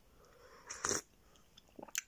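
A person slurping a sip of tea from a mug, one short slurp about three-quarters of a second in, followed by a few small lip smacks near the end.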